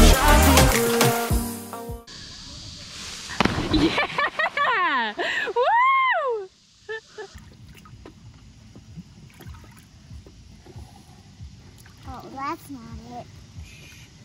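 Background music stops about two seconds in, followed by a high voice swooping up and down. After a sudden cut, quiet water sloshes in the shallows, with a short voice near the end.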